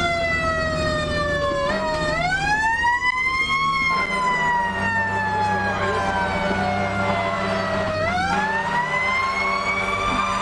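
Fire engine siren wailing: its pitch falls slowly, sweeps back up about two seconds in, falls slowly again over several seconds and sweeps up once more near the end, over a steady low engine drone.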